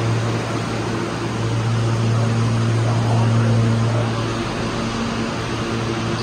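R160 subway car standing in the station with its doors open, its air-conditioning and auxiliary equipment giving a loud, steady low hum with a fainter higher tone that comes and goes.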